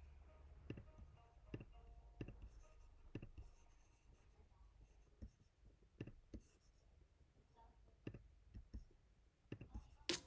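Faint computer mouse clicks, about nine of them at irregular intervals, with a longer pause near the middle.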